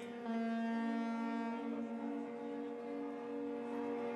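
Several ships' horns sounding together in steady, overlapping blasts at different pitches, held throughout. They are the harbour's customary salute once the cross has been retrieved from the water at the Epiphany blessing of the waters.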